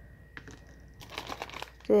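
Crinkling of a soft plastic wet-wipes pack as it is picked up and handled, after a light tap about a third of a second in.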